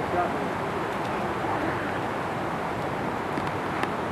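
Faint, indistinct voices over a steady rushing outdoor background noise, with a couple of light clicks near the end.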